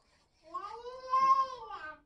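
A cat meowing once: one long call, about a second and a half, that rises and then falls in pitch.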